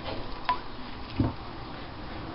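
An egg being broken open over a glass measuring jug: a small click of shell with a brief ring about half a second in, then a soft plop as the egg drops into the jug.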